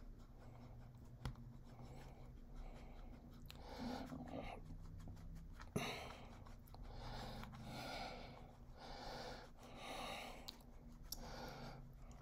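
Quiet breathing close to the microphone, a soft breath about every second or so, with a few faint clicks as the model is handled.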